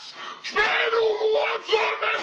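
A boy's voice wailing: a long, drawn-out cry held on one pitch for about a second, starting about half a second in, then a shorter cry near the end.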